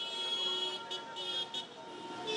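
Road traffic with vehicle horns honking: several overlapping steady horn blasts over traffic noise, with a short break about a second in.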